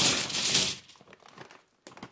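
Plastic bag crinkling as pizza rolls are poured out onto a foil-lined tray. A loud rustle for about the first second, then a few light scattered taps.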